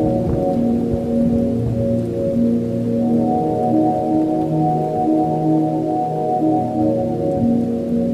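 Slow ambient music of sustained, overlapping low tones, each held a second or two before shifting to another pitch.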